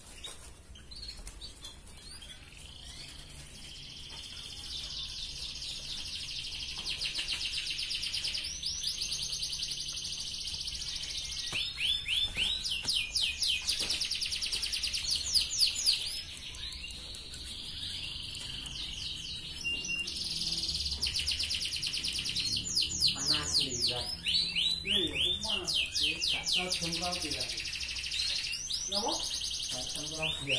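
Red canary singing a long, busy song of rapid trills and rolling notes. Louder chopped rolls come about twelve seconds in and again from about twenty seconds.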